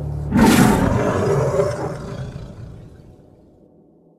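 A loud animal roar, like a big cat's, as an edited-in sound effect. It comes in suddenly about a third of a second in and fades away over the next three seconds.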